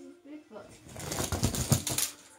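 Toy die-cast monster trucks rolling down an inflatable air mattress: a fast, clattering run of small clicks and rattles that builds and is loudest near the end.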